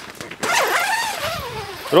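Long zipper on a tent-style awning's entrance door being pulled open, starting about half a second in as a rasp that rises and falls in pitch with the speed of the pull. The fabric door panel rustles as it is drawn aside.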